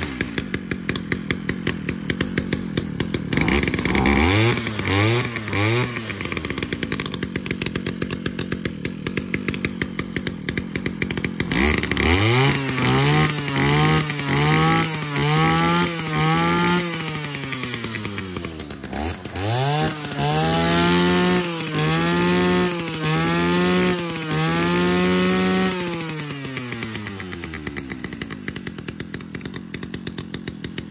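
Used Japanese 34 cc brush cutter engine running on a test start, revved by hand on its throttle cable in repeated short bursts and dropping back to idle between them. There are three quick blips about four seconds in, then two runs of about five revs each, after which it settles to a steady idle near the end.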